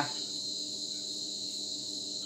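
Crickets trilling steadily, a high-pitched shrill with a fainter pulsing note above it.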